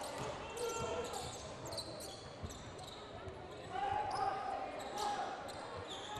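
Gymnasium crowd murmur and voices echoing in a large hall, with a basketball bouncing on the hardwood court now and then.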